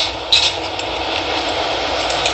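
Steady background hiss with no clear source, and a brief sharp sound about a third of a second in.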